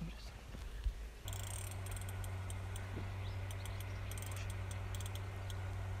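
A steady low hum with evenly spaced overtones sets in about a second in, with scattered faint high clicks over it; before it there is only a faint low rumble and a single click.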